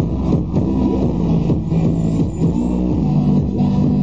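Electronic dance music with a steady, loud low bass line whose held notes step from one pitch to another.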